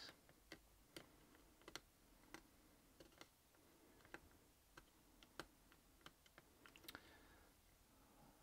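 Near silence with faint, irregular small clicks of plastic model kit parts pressed and shifted between fingers, about a dozen over the stretch.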